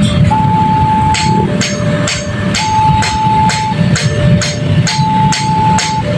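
Railway level crossing warning alarm sounding as the barriers lift after a train has passed: an electronic two-tone signal alternating between a high and a low note about once a second, joined about a second in by sharp bell strikes about twice a second. Many motorbike engines are running underneath.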